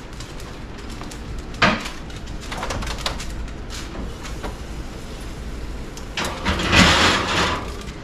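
A kitchen oven door opening with a sharp knock about two seconds in, then a few small clicks as a foil-covered baking dish goes onto the wire rack, and near the end a longer scraping rush as the rack and dish slide in and the oven door shuts.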